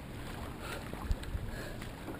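Wildwater racing kayak being paddled down a river: water rushing and splashing around the hull and paddle blades, with a couple of low knocks a little after a second in.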